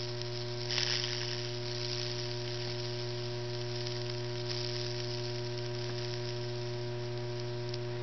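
Microwave oven transformer humming steadily at high voltage while current sizzles and crackles through damp black cherry wood at the nail electrodes, burning Lichtenberg figures. The sizzle is briefly louder about a second in; the burn is spreading extremely slowly.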